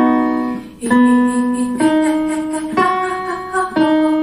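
Digital piano playing notes about once a second, each starting sharply and fading as it rings, the pitch stepping up and down between them.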